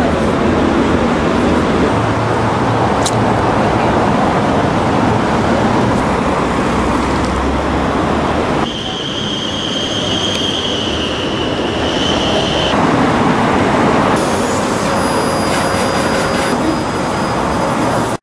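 Heavy city street traffic: a dense, loud rush of passing vehicles. About halfway through, a steady high-pitched squeal runs for roughly four seconds, like a vehicle's brakes.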